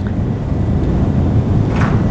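Low, rumbling noise that grows slightly louder.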